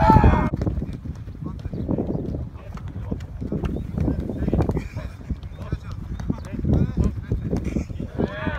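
A football being passed back and forth between players on grass: irregular dull thuds of boots striking the ball, several a second at times, mixed with steps on the turf.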